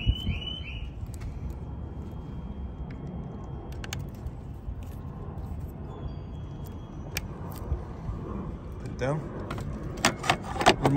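Plastic wiring-harness connectors being handled and snapped into an amplifier, a few short sharp clicks over a low, steady outdoor background. A repeating high chirping beep runs for about the first second, then stops.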